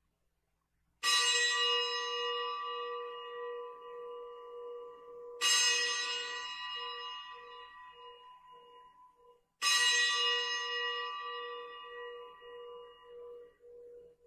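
An altar bell struck three times, about four seconds apart, at the elevation of the chalice after the consecration at Mass. Each stroke rings out with a bright, many-toned ring that fades slowly, with a low tone that wavers as it dies away.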